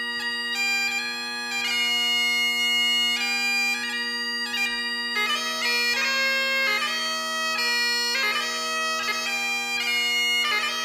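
Great Highland bagpipe playing a tune: the chanter melody moves from note to note, with quick grace-note flourishes, over the steady, unbroken sound of the drones.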